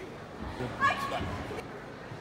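A person laughing briefly, about a second in.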